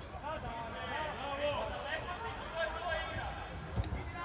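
High-pitched voices calling and shouting over one another across a youth football pitch during play, with one sharp thud near the end.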